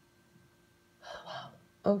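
A woman's quick, audible intake of breath in two short pulls about a second in, leading straight into the start of a spoken word near the end; a faint steady hum underneath.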